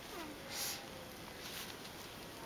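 A short rustle of the flag's cloth being folded by gloved hands about half a second in, over faint thin whining tones that slide in pitch.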